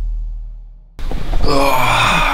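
Deep bass music fading out over the first second, then, after a sudden cut, a man groaning as he wakes up in bed: one drawn-out vocal groan rather than words.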